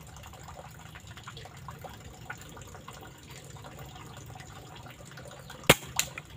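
A single air rifle shot, a sharp crack near the end, firing a 13.43-grain slug at a target 45 m away, followed right away by a fainter knock. The shot is a direct hit on the target.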